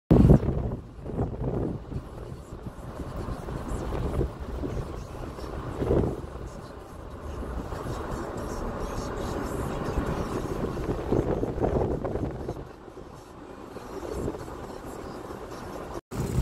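Outdoor background noise: a steady low rumble with a loud bump at the very start and a few brief swells, with faint voices now and then.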